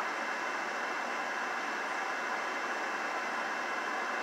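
Steady, even hiss of background noise inside a car cabin, with no engine note or other distinct sound.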